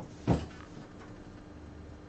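A single short knock or bump about a third of a second in, over a faint steady hum.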